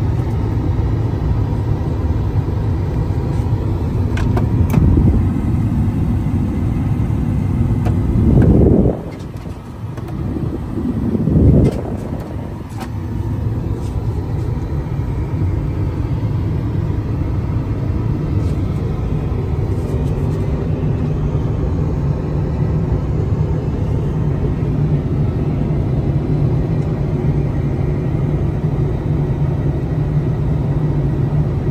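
Steady low rush of Airbus A380 cabin noise in cruise flight. About eight and eleven seconds in there are two brief louder swells, with the noise dropping off between them.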